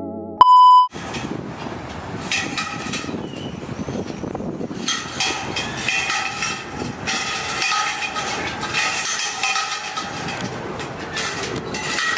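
A short, loud electronic beep about half a second in, then busy outdoor city ambience: a steady noise with many small metallic clatters and knocks.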